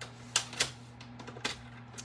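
Paper trimmer cutting a strip of cardstock: a few sharp plastic clicks as the blade carriage and cutting rail are worked, two strong ones close together early and lighter ones about a second later.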